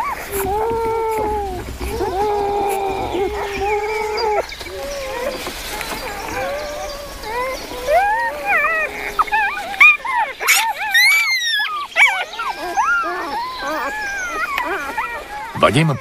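Newborn wolf pups whining and squeaking: a few longer steady whines in the first four seconds, then a flurry of short rising and falling squeaks from about eight seconds on, with one higher squeal in the middle.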